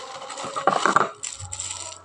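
Clear plastic wrapping crinkling as it is handled, with a louder burst of crackles a little after half a second in.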